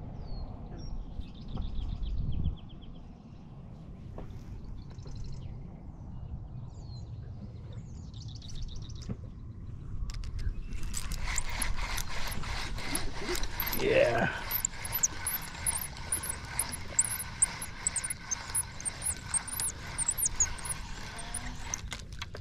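Spinning reel being cranked from about halfway through, a fast, even whirring tick, as a small catfish is reeled in. Before that, a low rumble of wind on the microphone with a few faint bird chirps.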